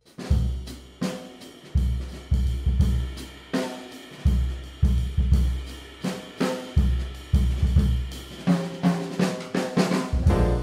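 Jazz rhythm section starting the tune's groove in 7, beginning suddenly: drum kit with snare, hi-hat and cymbals, over repeated low double-bass notes and piano.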